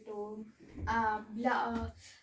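Only speech: a girl talking, with a short pause about half a second in.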